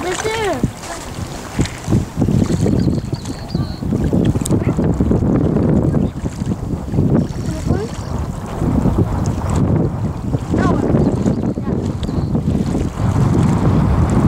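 Wind buffeting the camera microphone out on open water: a loud, gusting low rumble that swells and dips.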